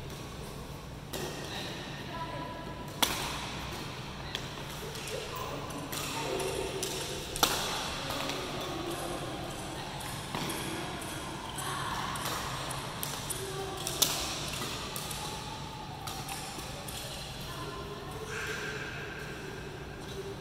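Badminton racket strings striking shuttlecocks in a feeding drill: a run of sharp pings and cracks every second or two, the loudest about three, seven and a half and fourteen seconds in.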